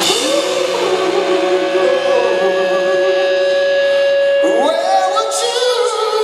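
Live rock band playing loudly: electric guitar and drums with vocals, one long note held for about four seconds, then a rising slide into new notes near the end.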